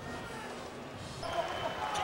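Arena crowd noise at a college basketball game, with a basketball being dribbled on the hardwood court; crowd voices rise a little about a second in.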